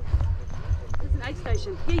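Regular thudding of running footfalls on grass, about four a second, heavy in the low end as if jarring a body-worn camera, with voices talking near the end.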